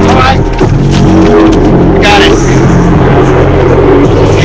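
Very loud music from a bus's onboard sound system, a bass line of held notes moving in steps, distorted by overload, with a voice over it.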